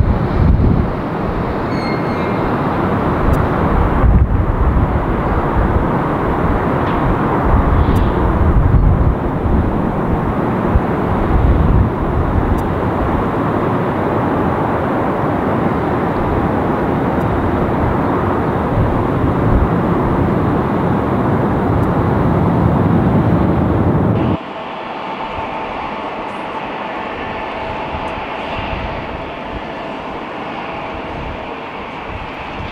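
Twin-engine jet airliner's turbofan engines at takeoff power through its takeoff roll and lift-off, a loud, steady rumble. About 24 seconds in it cuts to a quieter, steady, higher engine whine from an Embraer E175 regional jet on the taxiway.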